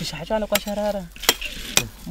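A woman's voice speaking briefly, with a few sharp knocks of a hand hoe chopping into garden soil.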